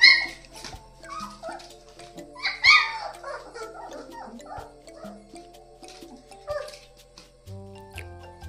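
A litter of 24-day-old German shepherd puppies yelping and whining as they scuffle with each other, with two loud high-pitched yelps, one right at the start and another near the three-second mark, and smaller cries in between. Background music plays steadily underneath.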